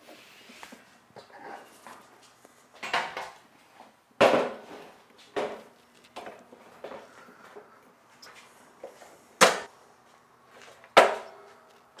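A DeWalt thickness planer being lifted and set down onto a metal miter saw stand, then shifted into place: a handful of separate knocks and clunks, the loudest about four seconds in, with two sharp knocks near the end.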